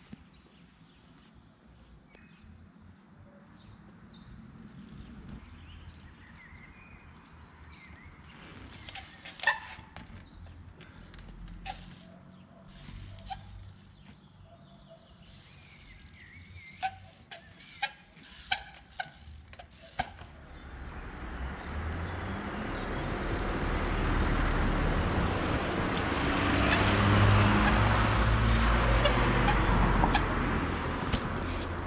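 Trials bike hopping up stone steps: a series of sharp knocks from the tyres and frame landing, with a quick run of several near the middle, over faint bird chirps. Then a passing car's road noise builds steadily until it is the loudest sound at the end.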